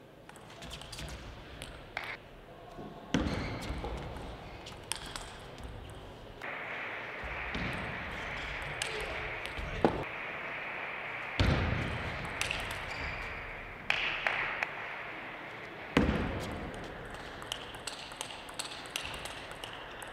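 Table tennis rallies: a celluloid-type ball clicking sharply off the rackets and the table in quick exchanges, with a few heavier knocks. A steady background noise of the hall comes in about a third of the way through.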